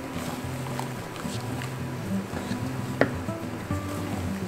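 Soft background music of sustained low notes changing every half second or so, with one light click about three seconds in.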